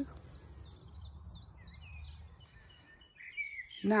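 Birds singing outdoors: a run of short, high, falling notes about three a second, then a few lower chirps, over a faint low steady rumble.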